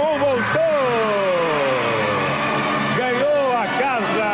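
Voices calling out in long, slowly falling slides of pitch, with music underneath.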